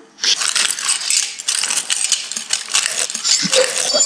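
Glass crunching and clinking, a dense run of sharp clicks beginning about a quarter second in, as a glass dish is crunched up.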